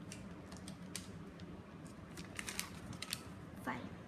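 Scattered light clicks and taps of hands handling a toy mini vault's rotating number rings and a sheet of paper.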